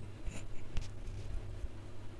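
Muffled, steady low rumble of a vehicle driving along a road, with a few faint ticks and clicks.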